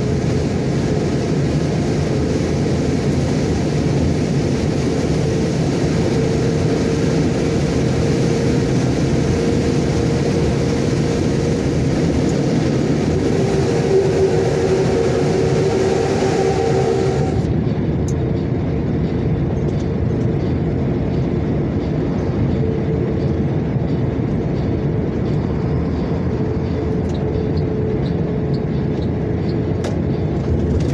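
Steady road and engine noise of a vehicle cruising at highway speed, heard from inside the cab, with a faint pitched hum in the middle stretch. A little past halfway the noise turns duller.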